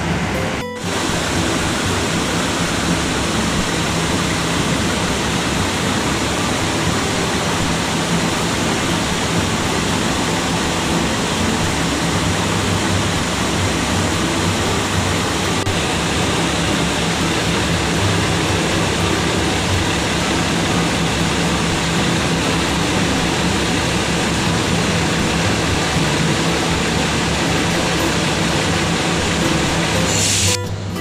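Cummins NT855-5R diesel engine of a KRD MCW 302 railcar idling, a loud steady drone heard close to the underframe.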